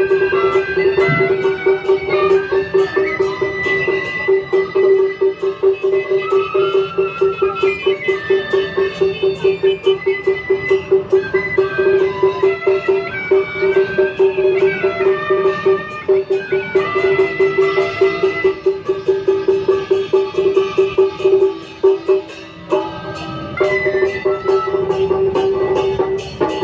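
Beiguan temple procession music: melody lines over a fast, steady percussion beat, playing continuously, with a brief lull about four seconds before the end.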